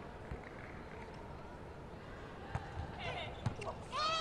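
Low arena crowd murmur between points, with a few soft thuds of a volleyball and a sharper hit about three and a half seconds in as the serve is struck.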